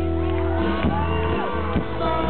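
Live band music with acoustic and electric guitars, recorded from among the audience. From about halfway in, audience members whoop and shout over it.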